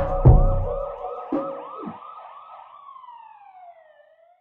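Outro of a hip-hop track: the beat's last heavy drum hits in the first second, then a siren sound effect in the mix, wailing rapidly up and down about four times a second. The siren then glides down in pitch and fades away as the song ends.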